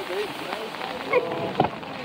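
Surf washing in around a small wooden fishing boat, with brief voices and a single knock about one and a half seconds in.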